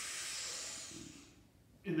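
A man drawing a deep breath in through his nose, as big a breath as he can take: a breathy hiss that swells and then fades out about a second and a half in.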